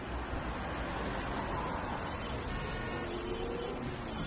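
Steady outdoor background noise, a distant urban traffic hum, with a faint rising tone about three seconds in.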